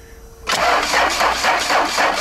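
A starter motor cranking a frozen Alfa Romeo 1.9 turbodiesel from a Xiaomi 70mai portable jump starter, with a fast, regular beat starting about half a second in. The engine is at −16 °C and its battery is run down below 10 volts.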